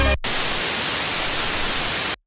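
Loud TV-static hiss, a white-noise sound effect like a television tuned to no channel. It starts abruptly about a quarter second in, right after the end of a descending electronic tone, and cuts off suddenly at about two seconds.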